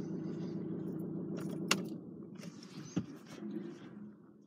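Citroën C3 engine idling, heard from inside the cabin, as a steady low hum while the steering wheel is turned with the engine running. A sharp click comes about 1.7 seconds in and a knock about a second later, with a faint jingle fitting the ignition keys.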